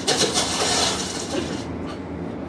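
Live theatre audience laughing, loud for about a second and a half, then fading.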